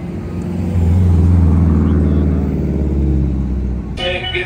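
A motor vehicle's engine passing close by in street traffic, with a deep low hum that swells to its loudest about a second in and eases off near the end.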